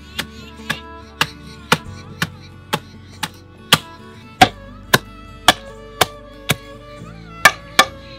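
Long wooden pestle with a metal-ringed tip pounding pieces of country chicken in a stone mortar: sharp regular strokes about two a second, with a brief pause near the end. Background music with plucked and bowed strings plays underneath.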